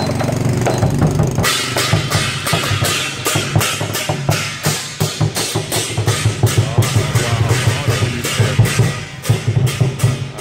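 Lion dance percussion: a big drum beaten in a steady, driving rhythm with clashing cymbals striking on the beat.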